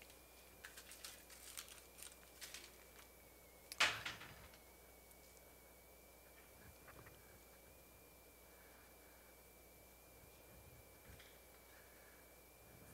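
Quiet room with a run of small faint clicks, then one louder knock with a brief ring about four seconds in, over a thin steady high-pitched electrical whine.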